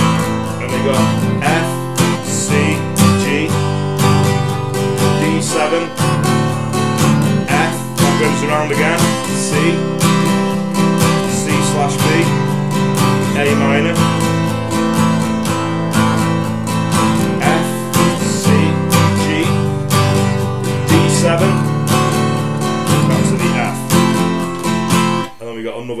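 Taylor 214ce steel-string acoustic guitar strumming chords, the interlude progression starting from C and C/B to A minor, at a steady rhythm. The strumming stops just before the end.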